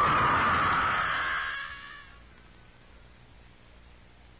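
A woman's long, high scream, acted for an old radio drama, fading out about two seconds in.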